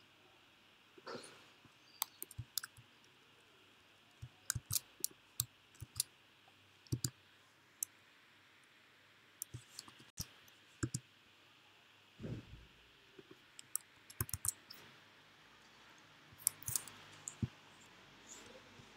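Typing on a computer keyboard: irregular single keystrokes and short clusters of sharp clicks, with a softer thump about twelve seconds in.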